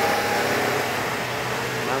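Mitsubishi light truck passing close by: a steady rush of engine and tyre noise, with a low engine hum coming up about halfway through.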